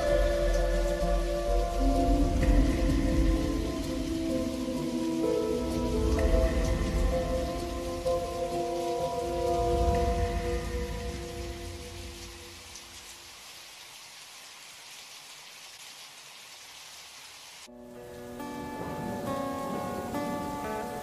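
Slow lofi music with held tones over a rain ambience fades out, leaving only the faint rain hiss for several seconds. Near the end a new lofi track starts suddenly with plucked guitar.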